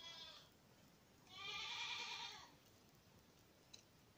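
Two faint animal calls: a short one at the start and a longer, wavering one about a second in.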